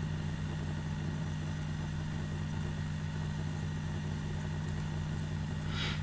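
Steady low electrical hum with a faint hiss, the background noise of the recording setup, holding unchanged. A short hiss comes just before the end.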